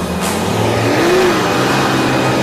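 Car accelerating away, its engine revving with a brief rise and fall in pitch about a second in, over a haze of tyre noise on a dirt road.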